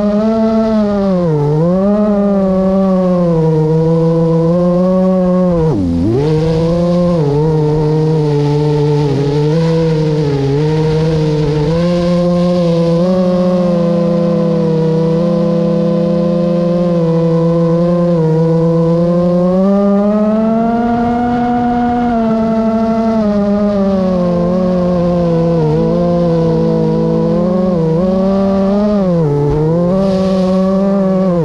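Multirotor drone's electric motors and propellers whining steadily, heard through the onboard camera. The pitch wavers with throttle and dips sharply then recovers three times, most deeply about six seconds in.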